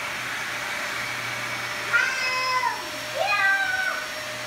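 Upright ball vacuum cleaner running with a steady hum. Two high, drawn-out cries break in, about two seconds in and again near the end, each under a second long.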